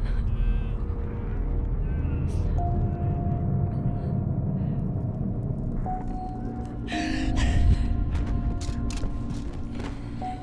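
Dramatic film score of held, steady tones over a deep rumble. It swells to its loudest a little past the middle.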